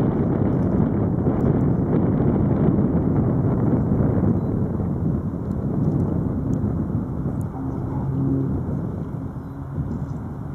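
Boeing B-17G Flying Fortress's four Wright Cyclone radial engines running throttled back through the landing and roll-out, mixed with wind noise on the microphone. The sound eases off after about four seconds, and a steady low engine hum comes through near the end.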